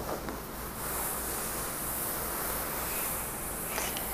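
Fingernails scratching a coarse woven upholstery fabric pillow cover: a few separate scratches, then a steady scratchy hiss from about a second in until just before the end.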